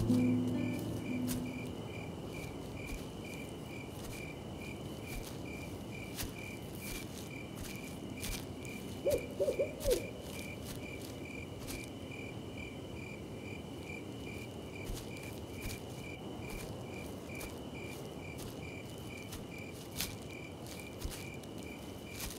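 Night ambience of crickets chirping, a regular chirp about twice a second, over a low hiss with scattered faint clicks. A short hooting call comes about nine seconds in.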